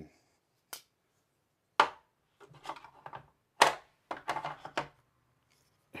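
Folding knives being handled and set down: a few sharp clicks and knocks, the loudest about two and three and a half seconds in, with lighter rattling in between.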